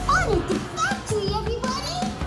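High-pitched, childlike voices with swooping pitch, over background music.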